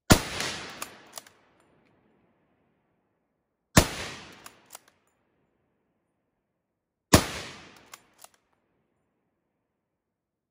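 Three rifle shots from a Gewehr 98 bolt-action rifle in 8mm Mauser, spaced about three and a half seconds apart, each report trailing off over about a second. Each shot is followed within a second by two short, sharp clicks.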